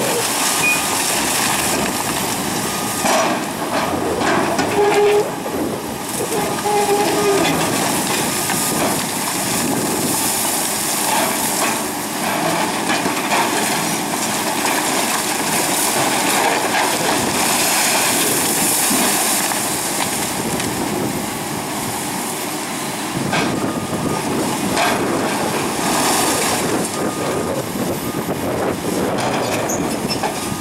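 Heavy demolition of a concrete water tower: a hydraulic breaker on a Komatsu PC220LC excavator hammering the wall while material handlers tear at it, concrete cracking and falling, over diesel engines running. Loud and continuous.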